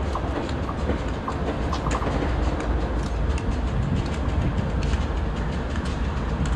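Union Pacific diesel locomotives approaching slowly, a steady low engine rumble with scattered sharp clicks from the train on the rails.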